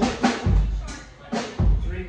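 A drum kit struck in a few loose hits: deep kick-drum thumps about a second apart among sharp snare and cymbal strikes, dying away near the end.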